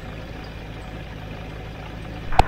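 Ultralight aircraft's propeller engine running steadily at idle as it taxis, heard from inside the cockpit.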